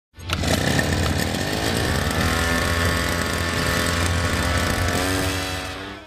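A small petrol engine running at high revs, mixed with music, fading out just before the end.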